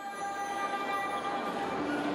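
A choir of women singing together, holding long steady notes in a chord.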